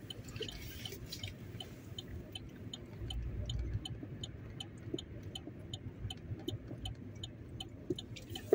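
Car turn-signal indicator ticking steadily, about three clicks a second, over the low hum of the car idling at a standstill. The low hum swells briefly about three seconds in.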